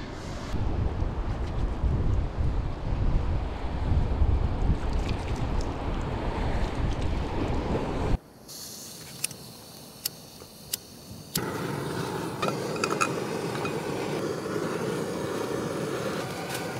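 Wind buffeting the microphone over sea surf for about eight seconds, then a sudden cut to a quieter stretch with a few sharp clicks. From about eleven seconds a steady hiss follows, typical of a small gas camping stove burner alight under a frying pan.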